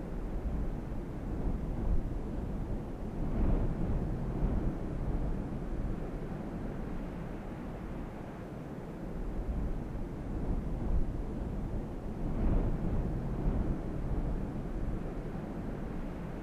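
Low, rumbling wind ambience, swelling in gusts about three seconds in and again about twelve seconds in.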